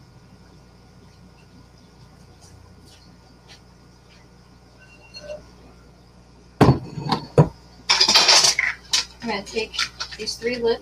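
Quiet room tone, then about six and a half seconds in two sharp knocks about a second apart and a burst of clattering and scraping as plastic food containers and lids are picked up and handled on a stovetop.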